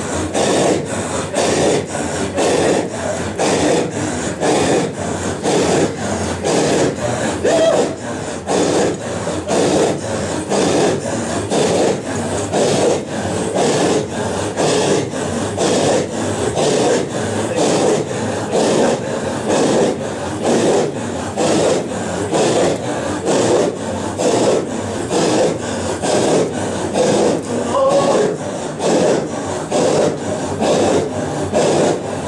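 A large group of men chanting a Sufi hadra dhikr in unison with forceful, breathy exhalations, keeping a steady, even rhythm of about one to two beats a second with no pause.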